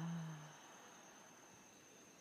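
A woman's relaxed, voiced sighing exhale, "ah", falling in pitch and fading out about half a second in: the release of breath as she lets the body relax deeper. After it, only a quiet background hiss with a faint steady high-pitched tone.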